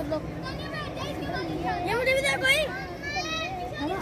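Several children's high voices calling and chattering over one another while they play.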